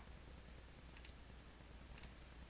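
Two faint mouse clicks about a second apart, over near silence.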